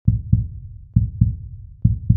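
Deep, booming double thumps like a heartbeat, a pair a little under once a second, sounding as an intro sound effect over the channel logo.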